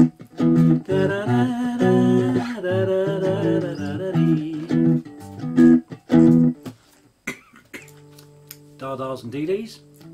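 Three-string cigar box guitar strummed in a steady rhythm of chords (E, A and B), with a voice humming along over the strumming. After about six and a half seconds the strumming stops, leaving a few ringing notes and a sliding note near the end.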